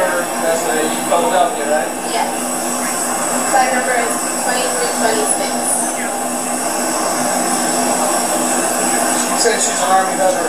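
Indistinct voices of several people talking in an airliner cabin, over a steady hum.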